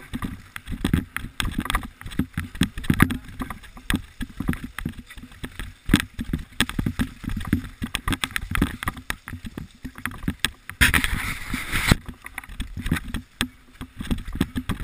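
Mountain bike running fast down a rough dirt trail: rapid rattles and knocks from the bike over bumps, tyre rumble, and wind on the microphone. A louder rushing hiss lasts about a second near the end.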